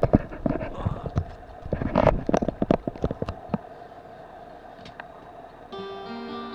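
Handling noise: irregular knocks and rubbing from a hand adjusting the recording device right against the microphone, dying away after about three and a half seconds. Near the end an acoustic guitar chord is strummed and rings on.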